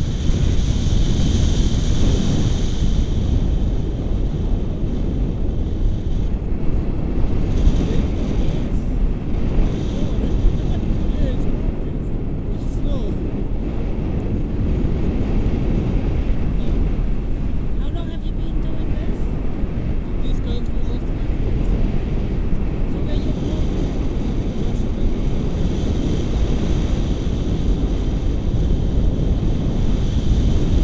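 Airflow buffeting the camera's microphone in flight under a paraglider, a loud, steady, low rumbling rush of wind noise.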